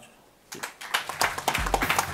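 Audience applause, starting about half a second in after a brief silence and building into many overlapping hand claps.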